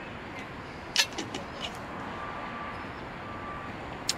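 Outdoor ambience with a steady hum like distant traffic. A sharp click comes about a second in, followed by a few lighter ticks.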